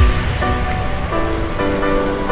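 Background music: a soft ambient track of held, layered notes that step to new chords every half second or so, over a steady wash of noise like surf.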